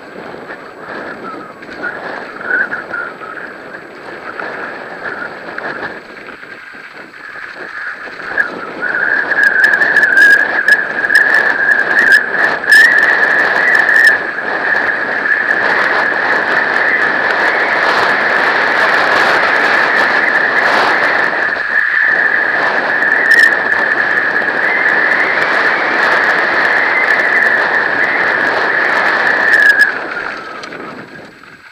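A mountain bike rattling down a gravel trail, with tyre and wind noise and scattered clacks over bumps. From about nine seconds in a loud, steady high squeal holds, rising slightly near the end, then cuts off suddenly.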